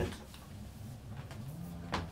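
Low, steady electrical hum from a 1957 Fender Deluxe tube amp just after it is switched on, with a few faint clicks and a sharper click near the end.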